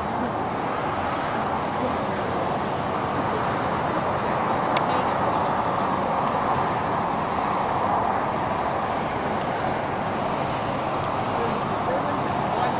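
Steady outdoor background noise: an even hiss at a constant level with no distinct events, and one faint click about five seconds in.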